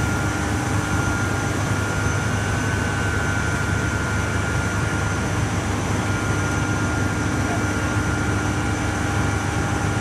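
Steady, loud drone of powerhouse machinery, with a deep hum and several constant tones over an even noise, unchanging throughout.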